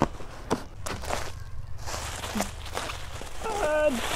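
A cardboard box being opened by hand and a plastic-wrapped model horse pulled out of it: a few light knocks and rustles of cardboard and plastic. A woman's voice starts near the end.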